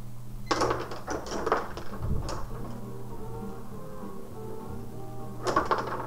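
Rod hockey table in play: the players' metal rods rattle and clack as they are pushed and spun and the puck is struck, in a flurry of sharp clicks in the first two seconds or so and again near the end. Background music with held notes plays underneath, plainest in the middle.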